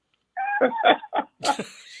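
Men laughing in a run of short bursts, starting about a third of a second in after a brief silence.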